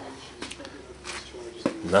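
Quiet room sound with a few short clicks and rustles, and a brief hiss about a second in. A man's voice starts speaking right at the end.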